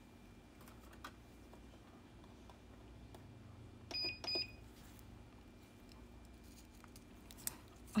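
Two short electronic beeps about a third of a second apart, from a gel nail-curing lamp (nail dryer), over a faint steady room hum.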